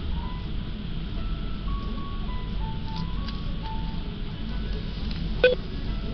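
Background music in a restaurant: a simple, chime-like melody of single stepping notes over a steady low room rumble. A single sharp clink about five and a half seconds in.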